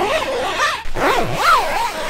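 Zipper on the door of a Hilleberg Keron GT tent being pulled in several quick strokes, its rasp rising and falling in pitch with the speed of each pull.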